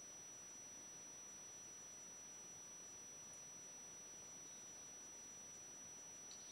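Near silence: room tone, a faint steady hiss with a thin high-pitched tone running under it.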